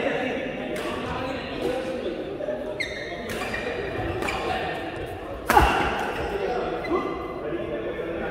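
Badminton rally in a large indoor hall: rackets strike a shuttlecock in a series of sharp hits, the loudest about five and a half seconds in, echoing off the hall.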